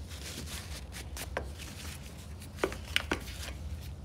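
Small metal parts being handled: a few sharp clicks and clinks, the two loudest close together near the end, as brake caliper pins are wiped clean of old grease, over a steady low hum.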